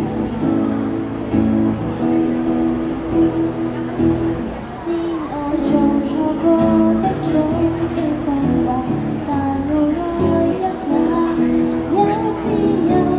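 A woman singing a Cantopop ballad into a microphone over acoustic guitar, both played through a small street amplifier.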